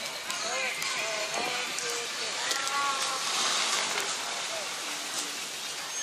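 Indistinct voices of people talking over a steady hiss of outdoor background noise.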